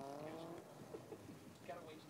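The last word of a man's voice trails off, then only faint, low background sound remains: a distant hum and a few scattered small noises.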